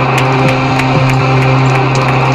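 Black metal band playing: heavily distorted guitars and bass holding a low droning note under a dense wall of sound, with drum and cymbal hits about three times a second.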